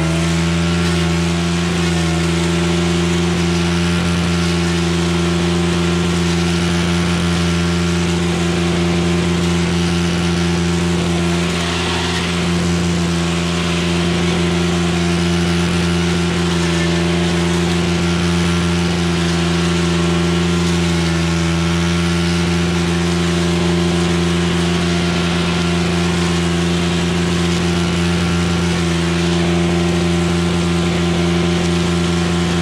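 Stihl FS 310 brushcutter's two-stroke engine running steadily at high throttle while cutting brush, its note dipping briefly twice.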